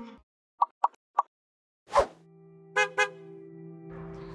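Edited intro sound effects: three quick pops about half a second to a second in, a sharp hit about two seconds in, then a steady low held tone with two brief chiming notes.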